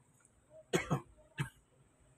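A person coughs twice in quick succession: a louder cough a little under a second in, then a shorter one about half a second later.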